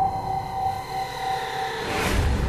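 Cinematic logo-intro sound design: a low rumbling drone under a held tone that fades out, then a swelling whoosh right at the end.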